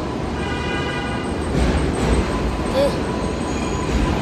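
Steady city street traffic rumble. For about a second and a half in the first half, a passing vehicle adds a steady high-pitched whine.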